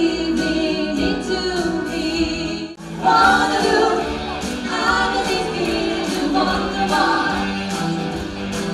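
Live pop band playing, with women's voices singing together over electric guitar, keyboard and a steady drum beat. The music breaks off for a moment about three seconds in, then carries on.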